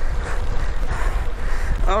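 Steady low rumble of wind on the microphone and road noise from a recumbent trike riding at about 22 mph.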